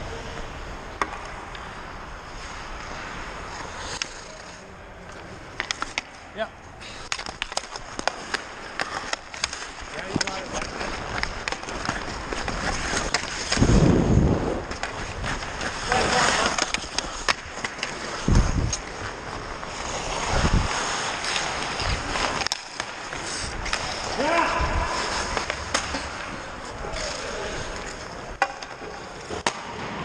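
Ice skates scraping and carving on the ice, with frequent sharp clacks of hockey sticks and puck and a heavy thud around the middle.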